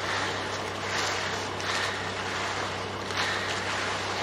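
Concrete rakes and a straightedge screed being dragged through wet concrete, scraping strokes coming roughly once a second, over the steady low hum of an engine running.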